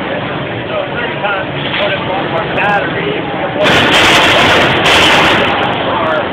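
A crowd of voices chattering. About three and a half seconds in, a combat robot smashing into a Dell desktop computer makes a sudden loud, harsh noise lasting about a second, then a second, shorter burst.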